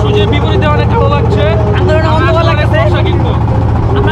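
Men talking in Bengali over the steady low drone of a boat engine.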